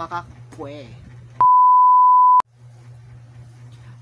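A single steady beep tone about a second long that cuts in and out abruptly with a click at each end. The room sound drops out beneath it, as with a censor bleep edited over the audio. A few syllables of speech come just before it.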